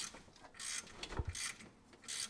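Hand ratchet wrench clicking in a few short bursts as a bolt on the front of a 6.0 LS V8 is loosened during a cam swap, with a light knock of the tool about a second in.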